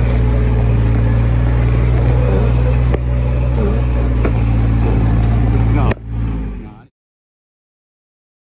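Kubota RTV 900's three-cylinder diesel engine running loud and steady at constant revs while the stuck vehicle's wheels spin, with no four-wheel drive engaged. About six seconds in the sound cuts off abruptly, swells briefly and dies away.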